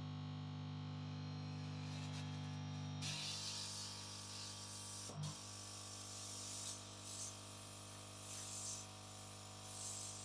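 Air blower for drying EEG electrode glue, humming steadily. About three seconds in, a hiss of air from its nozzle starts on the scalp and swells several times as the glue at each electrode is dried.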